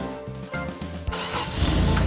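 Cartoon background music, with a monster truck's engine sound effect rising in about a second in as a loud rush of noise while the truck drives off.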